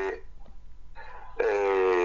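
Speech only: a short pause, then a drawn-out hesitation sound "e" from a speaker, over a faint low hum.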